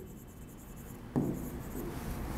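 Pen writing on an interactive whiteboard: faint stroke noise, with a sharper scratch starting about a second in.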